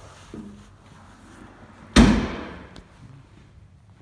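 The rear tailgate of a 2017 Jeep Wrangler Unlimited is slammed shut once, about two seconds in, with a sharp bang that dies away over about a second. Quieter handling noises come before it.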